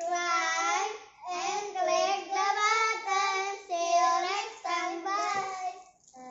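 Young children singing a melody in long, held notes, with short breaks between phrases about a second in and again near the end.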